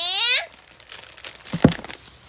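Plastic candy packaging crinkling and rustling as bags of sweets are handled, with a sharp knock about one and a half seconds in. A woman's drawn-out exclamation, rising in pitch, ends in the first half second.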